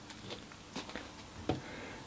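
A few faint, light knocks and taps over a quiet room hum: wooden longbows being handled as one is put back in the rack and the next reached for.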